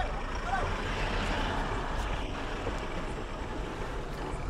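Steady low rumble of heavy truck engines running nearby, with a rushing swell of traffic noise about a second in.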